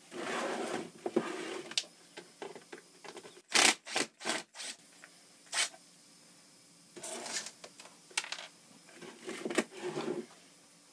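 A curved sheet hopper piece being handled and turned over on a workbench: irregular rubbing and scraping, with a quick cluster of loud, sharp knocks about three and a half to four and a half seconds in.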